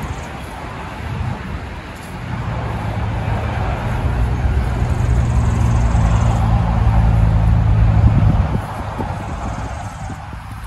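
A motor vehicle's engine running close by, a low steady hum with road noise that builds up from about two seconds in and drops away shortly before the end.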